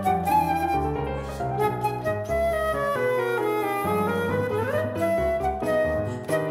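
Flute and piano playing a fast, rhythmic passage of a sonata movement marked Vivace. The flute is played live over a computer-rendered mockup of the piano part. A quick rising run comes a little before the end.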